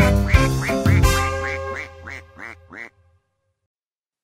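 Cartoon duck quacking in a quick run of about a dozen short quacks, roughly four a second, over a children's song's closing music. Music and quacks fade and stop about three seconds in.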